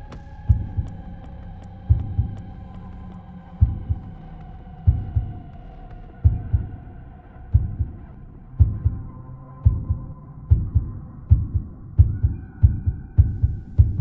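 A heartbeat sound effect: low double thumps, slow at first and speeding up steadily, over a held droning tone that slowly fades.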